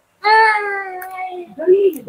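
A high-pitched voice holds one long sung or called note that falls slightly in pitch, then a shorter vocal sound follows near the end.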